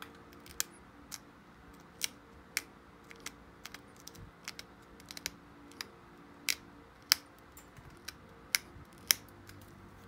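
Obsidian flakes snapping off the edge of a hafted knife blade under a pressure flaker: an irregular string of sharp clicks, some sharper than others, as the edge is pressure-flaked to sharpen it.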